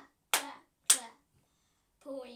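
Three sharp hand claps about half a second apart, each followed by a short pitched vocal sound from a child.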